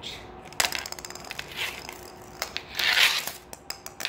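Plastic ball and red plastic stick blade clicking, knocking and scraping on a hard floor in a quick run of small taps, with a louder scrape about three seconds in.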